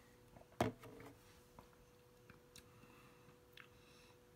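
A drinking glass of juice being picked up and drunk from: one sharp click about half a second in, then a few faint clicks.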